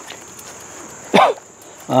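Steady high-pitched chirring of crickets in the background. One short, loud call falling in pitch comes about a second in, and a cough at the very end.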